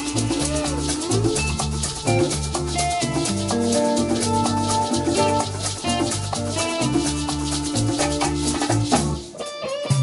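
A live Latin band playing: electric guitars, keyboard and drum kit over a repeating low groove, with maracas shaking a steady rhythm. The band drops out for a moment shortly before the end.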